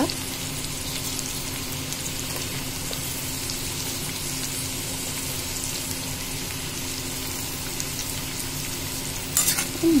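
Bitter gourd slices and onions sizzling in hot mustard oil in a steel pan over full flame: a steady crackling hiss, with a few sharper clicks near the end.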